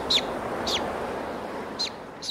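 White-tailed eagle calling: three short, high, yelping calls, each sliding down in pitch, over a steady background hiss.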